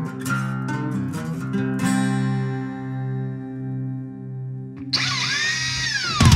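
Acoustic guitar picked, then a chord left ringing and fading out. About five seconds in, a cordless drill held against electric guitar strings starts up: a loud whirring screech with a squealing note that bends downward.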